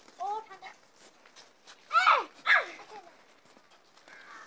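A dog barking: a short bark just after the start, then two louder barks falling in pitch about two seconds in, half a second apart.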